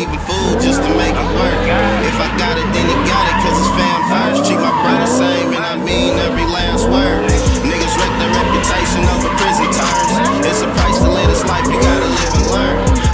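Fourth-generation Chevrolet Camaro spinning donuts: tyres squealing and the engine revving in repeated rising and falling swells. A hip-hop track with a deep bass line plays over it.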